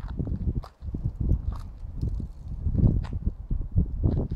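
Footsteps of a person walking on paved ground, uneven knocks over low rumbling noise on a phone microphone.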